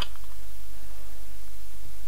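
Steady low background hum with a faint hiss; no distinct cutting or tool sound stands out.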